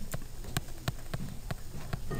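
A stylus tapping and clicking on a tablet screen while writing by hand: a string of irregular, sharp clicks.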